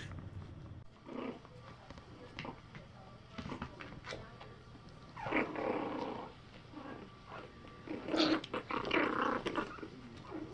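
Young puppies growling in short rough bursts as they play-fight. The longest and loudest bursts come about five and eight seconds in.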